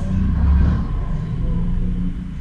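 A low rumble with no speech, swelling twice.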